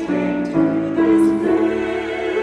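Choir singing a sacred choral anthem in sustained chords, the notes moving on every half second or so, with sung consonants cutting through.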